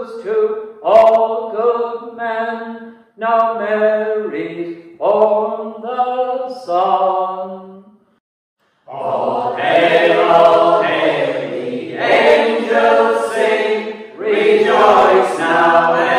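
A mixed group of voices singing a Christmas carol unaccompanied, in phrases with short breaths between them. After a brief silence about eight seconds in, the singing comes back fuller and louder, with many voices together.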